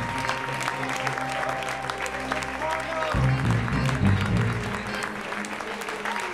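Music playing over audience applause.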